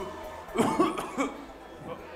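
Brief, indistinct vocal sounds in a large hall, clustered between about half a second and just past a second in, then quieter.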